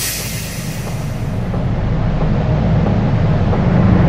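A sustained low rumble from a logo-intro sound effect, swelling slowly to its loudest near the end and then beginning to fade.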